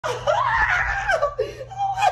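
A man laughing excitedly: one long high-pitched cry that rises and falls in the first second, followed by shorter bursts of laughter.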